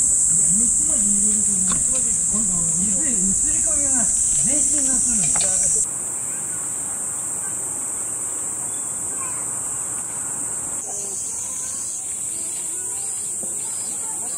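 A steady, high-pitched drone of insects, with people's voices over it for the first six seconds. About six seconds in, the voices stop and the sound becomes quieter, leaving the insect drone on its own.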